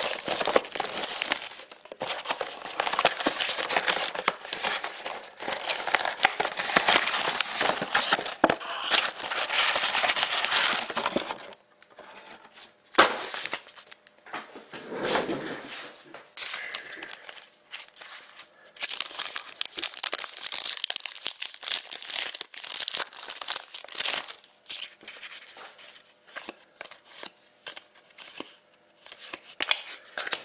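Plastic shrink wrap on a trading-card box being torn and crumpled off in a long crackling stretch, followed by quieter rustling and a second burst of crinkling as the foil card packs are handled and opened.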